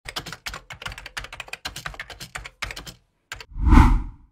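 Computer-keyboard typing sound effect: rapid key clicks, about eight a second, for about three seconds. After a short pause comes a louder, deeper thump near the end, the loudest sound.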